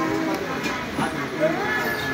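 Several people talking at once, with brass pots clanking and ringing as they are lifted and handled, including a couple of sharp metal knocks around the middle.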